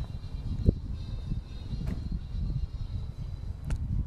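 Low rumble of wind and handling noise on a phone microphone carried while walking outdoors, with a sharp knock a little under a second in and a few fainter clicks.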